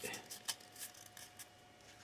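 A few faint ticks and rustles of fingers handling a cardboard toilet-paper tube coated in hot glue, the clearest about half a second in, fading to near silence in the second half.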